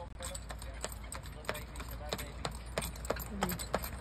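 Hooves of a horse pulling a jaunting car clip-clopping on a paved road at a trot, a steady rhythm of sharp clops that grows louder as the horse comes closer.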